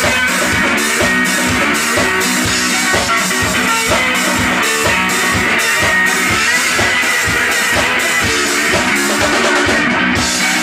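Live blues-rock band playing: amplified resonator guitar over a drum kit keeping a steady, driving beat.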